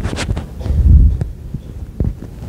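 Handling noise on a clip-on lapel microphone as fingers and jacket fabric rub and knock against it: a run of dull low thumps and rustling, loudest about a second in, with a few small clicks.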